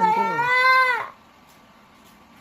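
A young girl's high-pitched whining cry, held for about a second and then cut off, from a child tense and frightened as her loose baby tooth is about to be pulled out with a thread.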